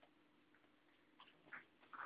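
Near silence: room tone with a few faint, short ticks near the end.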